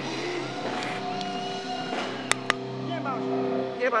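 Amplified electric guitar in a small club ringing on a held, sustained chord through the amps. There are two sharp clicks about two and a half seconds in, and a brief voice near the end.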